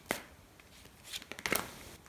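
A deck of tarot cards being shuffled by hand, the cards flicking against each other in short sharp clicks: one just after the start and a cluster about a second and a half in.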